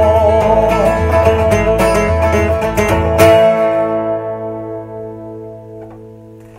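Bluegrass band of acoustic guitars, banjo and bass guitar playing the closing bars of the song. A last chord is struck about three seconds in and left to ring, fading away.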